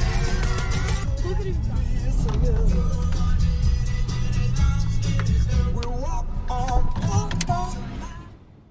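Inside a moving car: steady low road and engine rumble, with music and voices over it, fading out at the very end.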